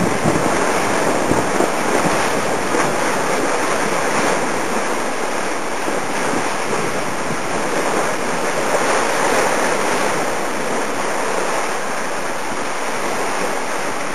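Steady rush of water past the hulls of a Corsair trimaran sailing at speed, with wind buffeting the microphone.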